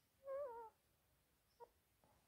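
A faint, short animal call with a wavering, slightly falling pitch, then a brief faint chirp near the end, over near silence.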